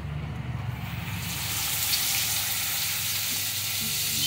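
Hot oil in an aluminium kadai starts to sizzle about a second in, as a masala-coated jilebi (tilapia) fish goes in, and keeps sizzling steadily as the fish fries.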